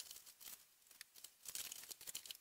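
Near silence with faint, irregular crackling clicks, mostly high-pitched.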